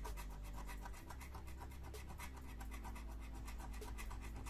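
A metal scraper disc on a stick scratching the coating off a Lotto scratch card in many quick strokes, faint and steady.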